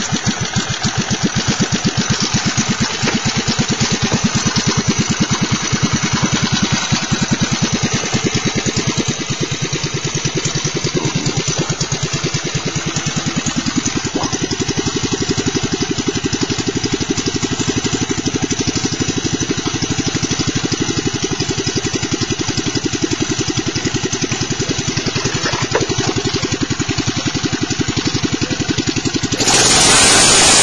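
3 hp Briggs & Stratton single-cylinder engine on a Lil Indian mini bike, running steadily through a straight pipe. In the last moment it is covered by a loud hiss.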